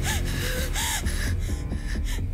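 A woman gasping in shock, a few short breathy gasps in the first second, over dramatic background music.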